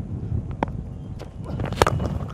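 A low steady outdoor rumble, then a single sharp crack near the end: a cricket bat striking the ball on a drive down the ground.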